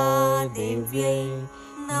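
A Sanskrit devotional mantra sung by a voice in long held melodic notes, with a short break about one and a half seconds in before the next line begins.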